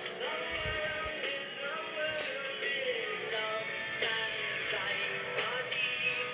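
Music from an FM broadcast station, picked up off the air and heard through a radio communications test set's monitor speaker.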